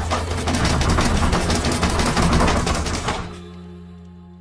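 Horror film soundtrack: a loud burst of rapid rattling and knocking over a low sustained drone. The rattling cuts off suddenly about three seconds in, leaving the drone to fade.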